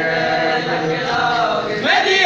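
Men chanting a nauha, a Shia lament, holding long notes; near the end the voices slide up in pitch into a louder phrase.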